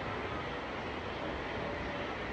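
Steady, even background noise with no distinct events and no change in level.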